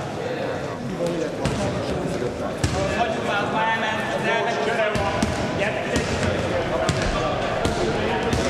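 Voices chattering in an echoing sports hall, with a futsal ball bouncing and knocking on the wooden floor several times.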